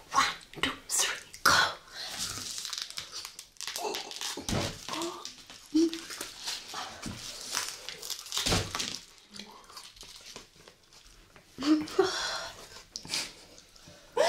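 Close-miked crunching and chewing of a raw broccoli head bitten without hands: a steady run of short crisp snaps, with breaths and a few short grunts between bites.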